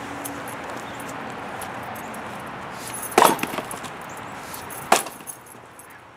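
Two sharp blows of a heavy fireman's axe biting into red oak as it is split, the two under two seconds apart, the first trailing a brief clatter.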